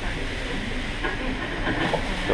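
Steady room noise of a small restaurant kitchen: an even low rumble and hiss, with no distinct clatter or voice standing out.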